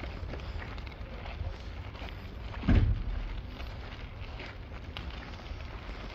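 Crunching of footsteps on a gravel path, with low wind rumble on the microphone, broken by one short, loud low sound a little under halfway through.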